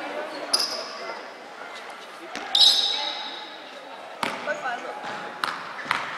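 A basketball bouncing a few times on a hardwood gym floor in the second half, each bounce a sharp knock echoing in the large hall, under a murmur of voices. A short shrill squeak sounds about halfway through.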